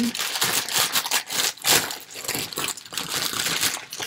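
A thin plastic toy package crinkling and crackling loudly and continuously as it is pulled open by hand.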